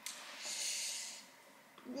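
A woman blowing out a breath, a nervous breathy huff of under a second, heard mostly as a hiss; her voice comes in near the end.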